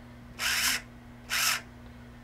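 Small brushless motors of a Gremlin mini quad, props off, spooling up twice in short bursts as the transmitter stick is moved. This is turtle mode at work: the motors on one side run in reverse to flip a crashed quad back over.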